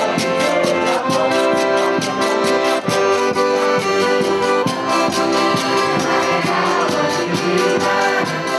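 Portuguese folk music: piano accordions playing held chords over a steady, regular drum beat.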